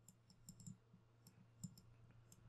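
Faint, irregular clicks and taps from handwriting a word on a computer's digital whiteboard, over a low steady hum.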